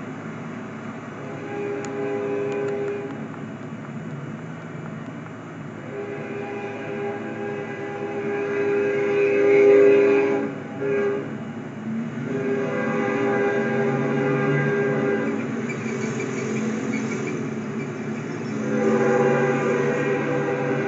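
Union Pacific locomotive's Nathan K5HL five-chime air horn sounding a series of blasts: a short one near the start, a long loud one about halfway through, another soon after, and a fourth beginning near the end.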